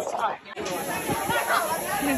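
People chattering, with a steady high hiss that starts suddenly about half a second in as an overhead misting system sprays from the canopy.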